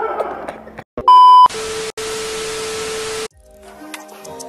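Editing sound effects at a cut: a loud, high beep about a second in, then about two seconds of static hiss with a steady hum beneath it, stopping abruptly. Music begins near the end.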